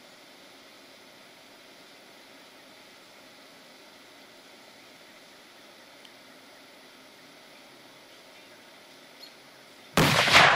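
Faint steady outdoor hiss with two small clicks while the bag burns. At the very end, a loud explosion begins as the oxygen-filled garbage bag goes off.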